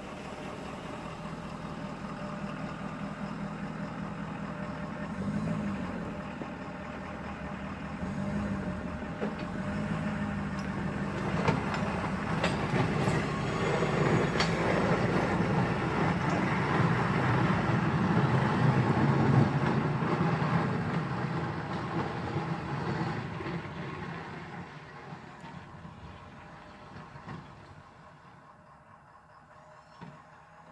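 Diesel engine of a Ford F-250 pickup running steadily, then pulling away past close by. The sound grows to its loudest about halfway through and fades as the truck drives off down the snowy driveway.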